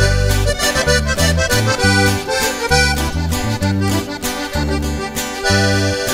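Live norteño band playing an instrumental passage between verses: the accordion carries the melody over strummed guitar and a low bass line on a steady beat.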